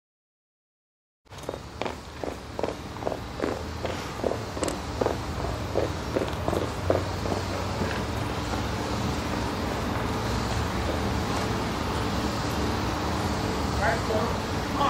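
Boots of a marching color guard striking a cobblestone path in step, about two to three footfalls a second. The sound cuts in about a second in. The steps fade about halfway through, leaving a steady low rumble of background noise.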